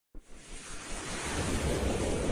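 A rushing whoosh sound effect for an animated logo intro. It starts suddenly just after the beginning and swells steadily in loudness, with a deep low rumble beneath the hiss.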